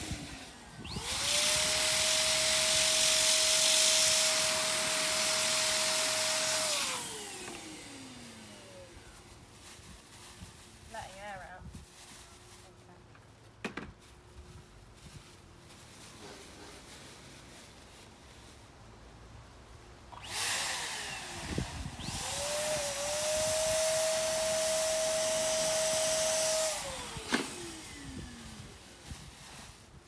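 Electric balloon pump run twice for about six seconds each, blowing air into a bag, its motor whine rising as it starts, holding steady, then falling away as it winds down.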